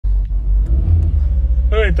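An old Dacia car's engine idling with a steady low rumble, heard from inside the cabin.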